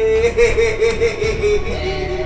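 A man laughing in a high voice: a quick run of laughs, about four or five a second, slowly falling in pitch.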